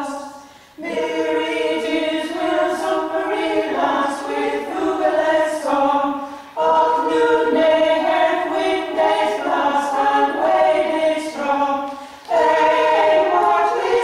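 Women's a cappella choir singing in close harmony, in three phrases, each new one entering after a brief breath pause: about a second in, midway, and near the end.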